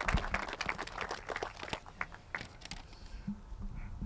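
Scattered applause from a small audience, dense clapping that thins out and fades away about halfway through.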